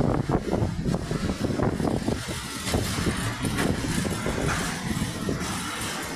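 A freight train's covered steel-coil wagons rolling past at speed: a steady rumble of wheels on rail, broken by frequent sharp knocks and clatters from the wheels and couplings.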